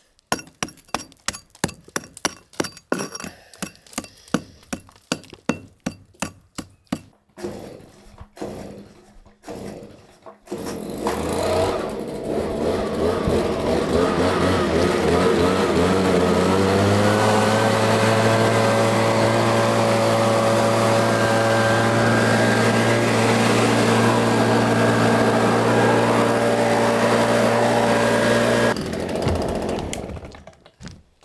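A chisel struck with a hammer chips old mortar out of brick joints, about two to three sharp strikes a second for the first seven seconds or so. About ten seconds in, a handheld two-stroke petrol leaf blower starts up and runs loud and steady, its pitch rising as it speeds up, blowing out mortar dust and debris, until it cuts off shortly before the end.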